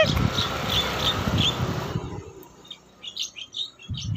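Small birds chirping: short high chirps, about four in the first two seconds and a few more near the end. In the first half they sit over a rumbling background noise.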